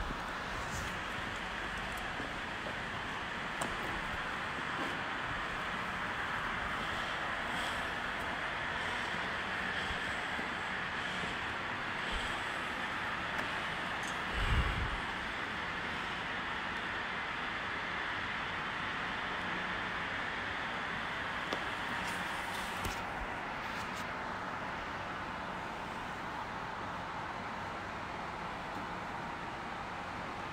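Steady, even background noise, a hiss-like rush with no clear tone, with one brief low thump about halfway through.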